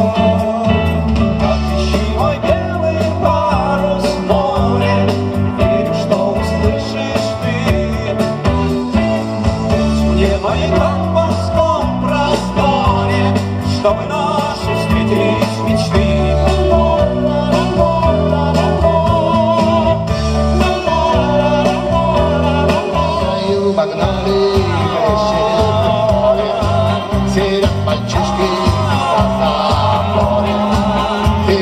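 A live rock band playing loud: electric guitars, bass, drums and keyboards, with a man singing lead over them.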